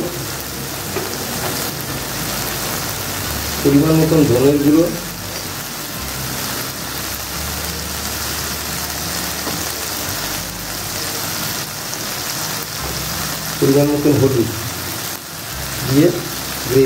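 Chopped onion and tomato frying in hot oil in a pan: a steady, even sizzle, while ground spices are tipped onto it. A voice speaks briefly twice over the sizzle, about four seconds in and near the end.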